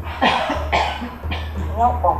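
A woman coughing three short times, followed by a few spoken words near the end, over background music.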